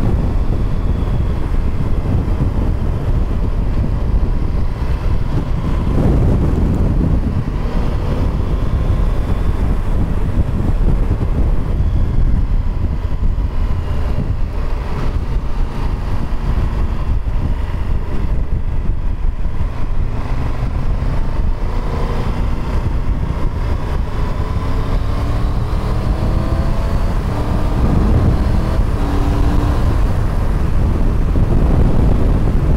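Motorcycle engine running under way with heavy wind noise buffeting the onboard microphone. In the last third the engine note rises several times.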